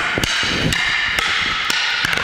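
Rattan arnis sticks striking each other in a fast exchange: about five sharp wooden clacks roughly half a second apart, each ringing briefly.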